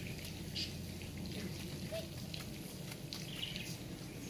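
Faint outdoor background with a few short, high bird chirps scattered through it.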